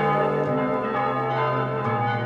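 Church bells ringing at midnight: a steady wash of many overlapping ringing tones.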